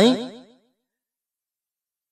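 The tail of a man's spoken word, its pitch gliding as it trails off and fades out about half a second in, followed by complete silence.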